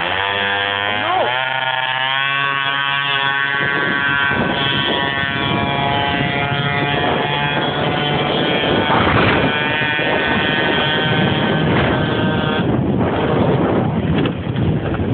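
Small moped engine revving up, its pitch rising over the first second or so, then running at steady high revs under load, mixed with wind noise on the microphone.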